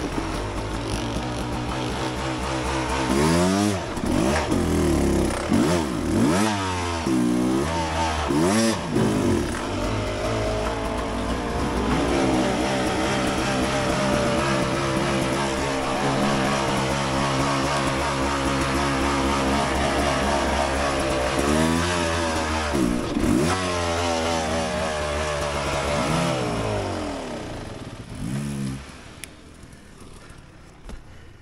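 Beta 300 RR two-stroke dirt bike engine revving in several quick blips, then running steadily at low revs, with a few more blips a little after halfway. Near the end the engine dies away, with one last short blip.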